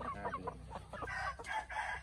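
Chickens clucking, with a rooster crowing in the second half.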